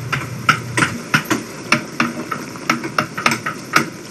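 Wooden mallet striking a wood-carving chisel, cutting into a wooden sculpture: a run of sharp knocks, roughly three a second and unevenly spaced.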